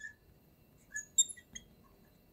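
Marker tip squeaking on a glass lightboard while numbers are written: a few short, high squeaks about a second in.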